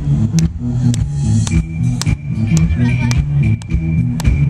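Amplified live band music from a festival stage: a steady drum beat of about two hits a second over a repeating bass line, with a high held note coming in about a second and a half in.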